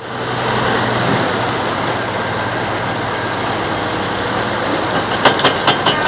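Diesel engine of a Terex backhoe loader running steadily with a low hum while it loads snow into a dump truck. Near the end comes a quick run of sharp knocks and clinks.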